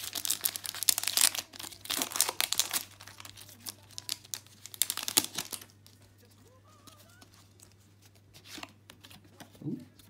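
Foil Pokémon trading card booster pack being torn open by hand, its wrapper crinkling in a dense run of crackling for about the first five seconds, then only faint rustles.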